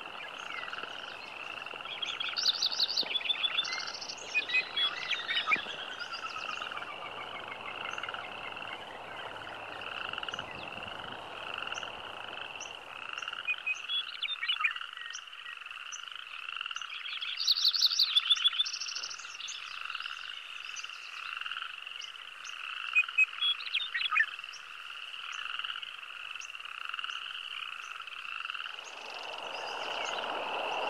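A chorus of frogs calling in steady, evenly repeated pulses, with short flurries of bird chirps breaking in three or four times. Rushing river water sounds underneath for the first half, drops away, and comes back near the end.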